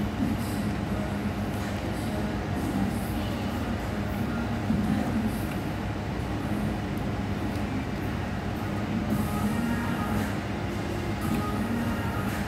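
Steady low mechanical hum over a constant rumble, with no clear breaks.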